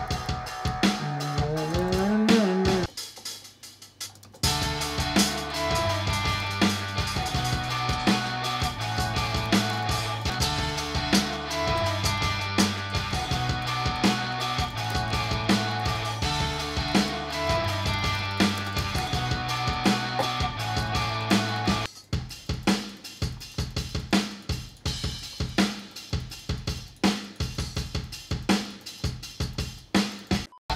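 A programmed pop-punk beat playing back: a fast rock drum kit pattern of kick, snare and hi-hat under a rock-guitar-style melody. The melody drops out briefly about 3 s in and again about 22 s in, leaving the drums playing alone.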